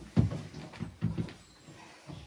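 A dog vocalizing in a run of short, low sounds, about four in just over a second, trailing off near the end.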